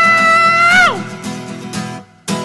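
A song with strummed acoustic guitar: a long high sung note is held, then slides down and stops about a second in, while the guitar strumming carries on.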